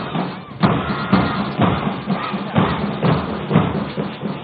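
Marching brass band music from a police band, with a steady drum beat about twice a second.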